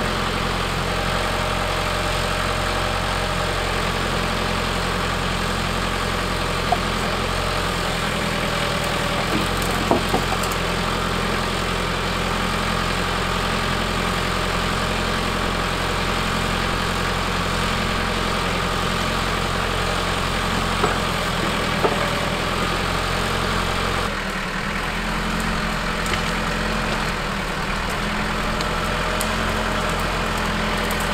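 Branson 5025C tractor's diesel engine running steadily, driving the hydraulics of the forestry trailer's crane as it loads logs. A few brief sharp knocks come from the logs in the grapple.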